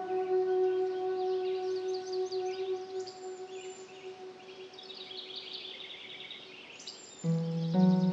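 Ambient meditation music: a held chord fades away over the first few seconds, leaving birds chirping on their own through the quieter middle. A new sustained chord comes in near the end.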